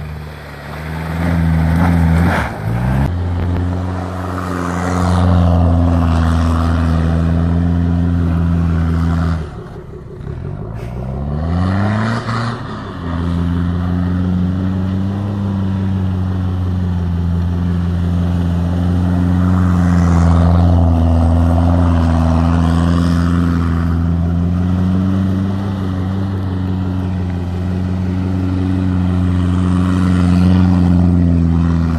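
Toyota Hilux Surf's engine held at steady high revs while the 4x4 spins donuts on snow. The revs drop away and climb back up twice, about two seconds in and again around ten seconds in.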